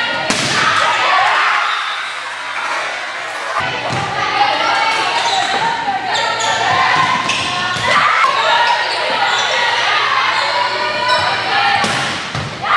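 Volleyball rally in an echoing gymnasium: several sharp smacks of the ball being hit and striking the floor, over voices shouting and talking throughout.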